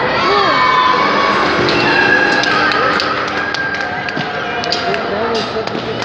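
Indoor football game in a sports hall: players and spectators shouting and calling over one another, the ball thudding off feet and the boards now and then, and shoe squeaks on the hall floor, with the hall's echo.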